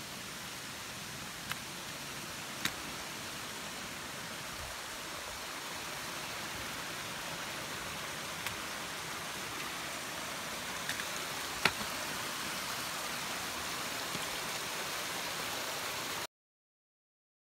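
A steady rushing hiss that grows slightly louder toward the end, with a few sharp clicks scattered through it. The loudest click comes about two-thirds of the way in.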